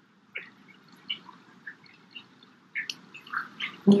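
Small dog whimpering in a scatter of short, high squeaks.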